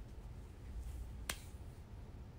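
A single sharp click a little past halfway, over a faint low rumble of room noise.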